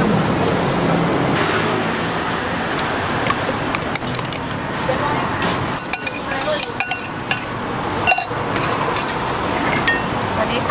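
Banana-and-egg roti frying on a street vendor's flat griddle with a steady sizzle, a metal spatula clicking and scraping on the pan in the second half.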